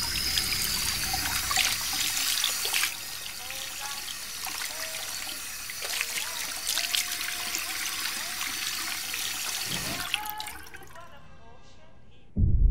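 Water running from a kitchen tap into a sink, loudest for the first three seconds, then a little softer, stopping about eleven seconds in.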